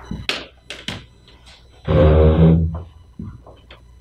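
Papers being handled on a meeting table, with scattered small taps and clicks. About two seconds in comes one loud rustling scrape close to the microphone, lasting under a second.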